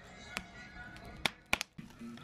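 Wood burning in an open metal fire pit, crackling with a few sharp pops, the loudest a quick pair a little past halfway, over faint background music.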